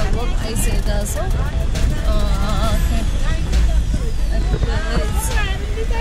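Steady low rumble of a car cabin on the move, with several voices talking and calling out over it.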